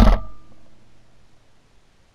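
The end of a shotgun blast, its echo dying away over about the first second, then near silence.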